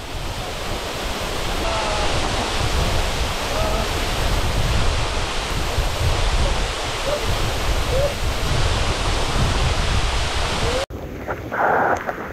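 Small waterfall pouring into a shallow rock pool: a steady, dense rush of falling and splashing water. The rush breaks off abruptly about eleven seconds in and is followed by a quieter, closer spatter of water.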